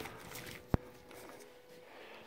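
Quiet handling of a car wiring loom, with one sharp click about a third of the way in and a faint steady hum underneath.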